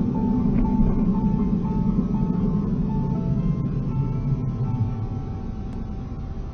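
Steady low rumble of a vehicle driving, with a simple background melody of short held notes over it; the rumble eases slightly near the end.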